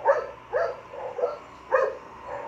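A dog barking repeatedly, about five short barks at roughly two a second.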